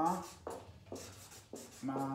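Marker pen writing capital letters on flip-chart paper: short scratchy strokes in the middle, with a man's voice drawing out syllables at the start and again near the end.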